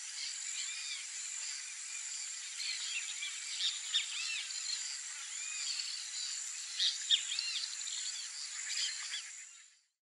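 Swamp ambience: a steady high-pitched drone under repeated short arching chirps from small animals, fading out near the end.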